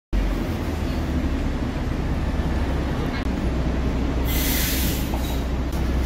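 Steady low background rumble, with a short burst of hiss about four seconds in.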